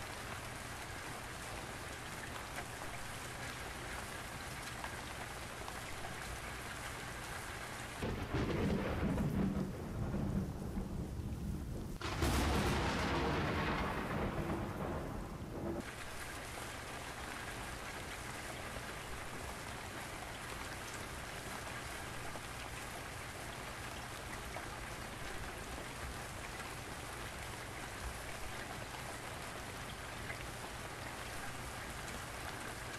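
Steady hiss of rain. A loud, rough low rumble comes in suddenly about eight seconds in, surges again a few seconds later and cuts off suddenly after about eight seconds.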